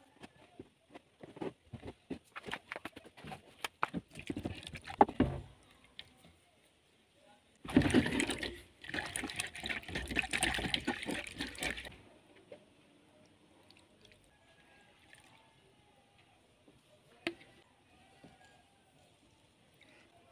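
Wet berry pulp being crushed by hand inside a cloth, with scattered short wet crackles and rustles. From about eight seconds in, water is swished and sloshed by hand in a plastic cup for about four seconds to wash the seeds free, followed by a few faint drips.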